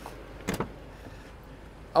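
A BMW 750i's rear door latch clicks open once, a short sharp click about half a second in, over steady low background noise.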